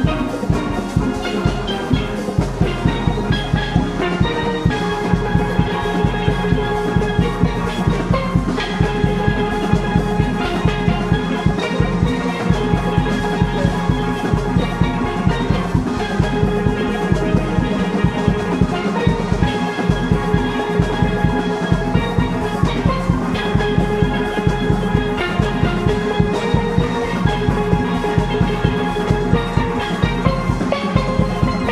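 A steel orchestra playing live: many steelpans ringing out melody and chords over a drum kit with cymbals and hand percussion keeping a steady beat.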